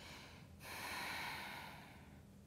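A woman breathing out: one long, airy exhale that starts abruptly about half a second in and fades away over about a second and a half.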